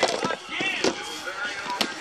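Plastic tackle boxes and trays being handled, with a few sharp plastic clicks and knocks.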